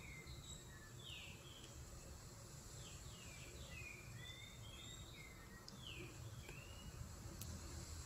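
Faint chirping, short high rising and falling chirps about two a second, typical of a small bird, over a faint low steady hum.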